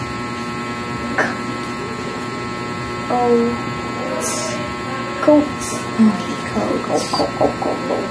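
Quiet speech in short bits, sounding out a phonics flashcard word, over a steady electrical hum.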